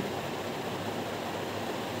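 Steady, even hiss of room background noise, with no distinct events.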